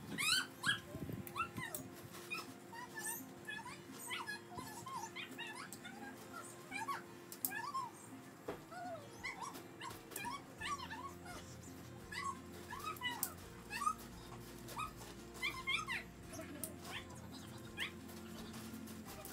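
Short high animal chirps that rise and fall in pitch, several a second throughout, over steady background music.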